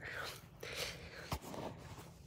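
Faint rustling handling noise from a handheld phone camera moving against hoodie fabric, with one short click about a second and a third in.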